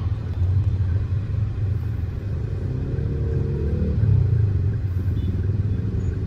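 Road traffic of cars and motorcycles heard from inside a taxi: a steady low engine and road rumble, with an engine revving up in rising pitch for a moment midway.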